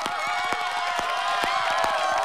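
A few people clapping by hand, irregular claps under a long, drawn-out cheer.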